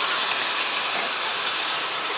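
Steady outdoor background noise: an even hiss with no clear single source and no rhythm.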